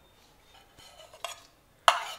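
A metal spoon scraping chopped coriander and mint from a plate into a stainless steel bowl: a few faint scrapes, then one sharp clink of the spoon against the dishes near the end.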